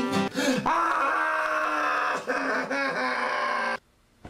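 A man strumming an acoustic guitar and singing without words, holding one long vocal note over the strumming. The sound cuts off suddenly just before the end.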